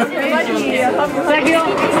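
A group of people chattering, several voices talking over one another.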